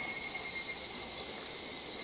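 Chorus of cicadas in a summer forest: a loud, steady high-pitched drone with no break.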